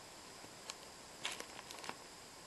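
Quiet indoor room tone with a faint steady hiss and a thin high whine, broken by a few soft clicks partway through and again near the end.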